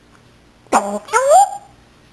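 African grey parrot vocalizing: two short calls about three-quarters of a second in, the second a pitched glide that rises.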